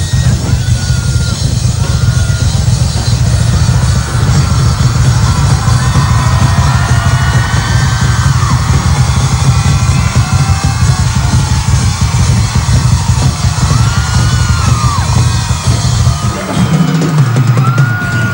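Live drum solo on a full drum kit: a dense, unbroken run of bass drum under cymbals, with high screaming from a large crowd rising and falling over it. The drum pattern changes shortly before the end.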